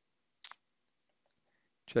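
A single short mouse click about half a second in, otherwise near silence.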